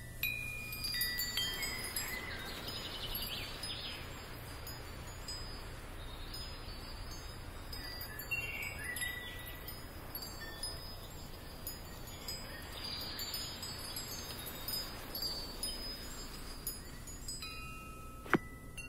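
Soft, high tinkling chime tones, scattered ringing notes that swell in shimmering flurries a few times, the magical sound effect of a HoloLens hologram of a painting whose butterflies fly out across the wall.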